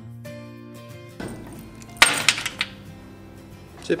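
Background music, with a sharp metallic clatter about halfway through as a metal slide-bolt door latch is handled, followed by a few smaller clicks.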